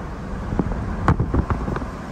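Road noise from inside a moving car: a steady low rumble of tyres and wind, with several short knocks through the middle.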